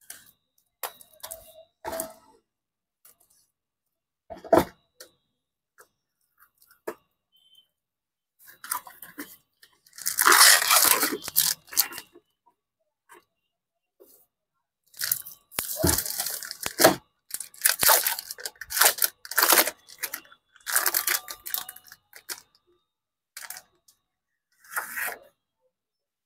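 A few light scrapes and clicks as a cardboard box is slit open, then a metallised foil wrapper being torn and crinkled. The wrapper comes off a pack of glossy plastic inkjet sheets. The loudest tearing comes about ten seconds in, followed by a long stretch of crackling foil.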